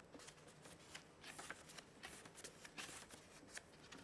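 Near silence with faint paper rustling and a series of light ticks, as pages are handled at a reading lectern.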